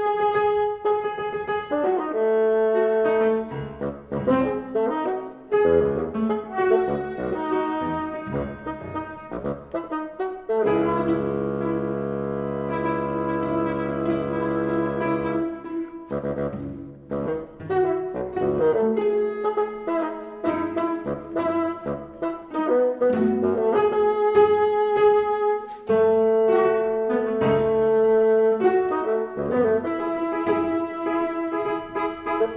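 Contemporary orchestral music from a bassoon concerto, with bassoon, winds and brass in short, choppy figures. About ten seconds in, a held chord lasts some five seconds before the short figures return.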